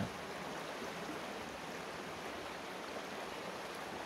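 Steady rushing of a stream flowing over rocks.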